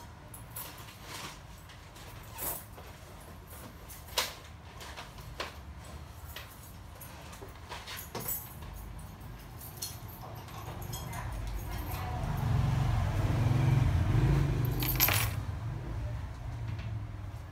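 Scattered light clicks and small metallic jingles, then a low rumble that swells over the last several seconds and eases off near the end, with one more sharp click.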